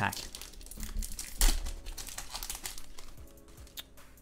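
A foil trading-card booster pack being torn open and crinkled in the hands: a run of crackling rustles, sharpest about a second and a half in, thinning out near the end.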